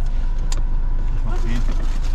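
Steady low rumble inside a car, with one sharp click about half a second in and faint muffled voices near the end.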